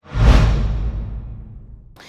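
Title-card sound effect for a TV programme logo: a sudden whoosh with a deep boom, fading away over about a second and a half.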